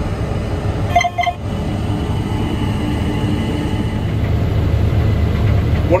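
Case IH 8250 Axial-Flow combine running under load while harvesting wheat with a draper header, heard from inside the cab as a steady low engine and machinery hum. A short pitched sound is heard about a second in.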